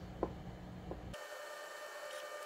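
Faint room noise with two light taps as the cast metal part is set on the scanner's turntable. About a second in, this gives way to a faint steady whine of several pitches from the EinScan SE 3D scanner running a scan.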